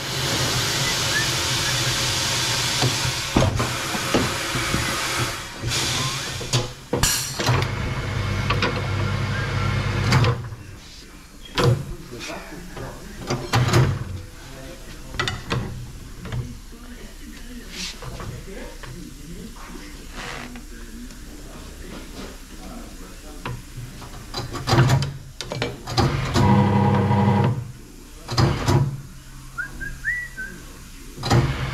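A tyre-changing machine at work on a spoked motorcycle wheel as a wide tyre is fitted. A steady hiss and hum fill the first ten seconds or so. Then come scattered metal clanks and knocks from the tyre levers and mounting head, and the machine's motor hums again for a couple of seconds near the end.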